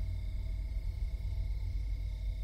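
Steady, low, dark ambient drone with faint sustained higher tones: the background sound-design bed of a horror audio drama.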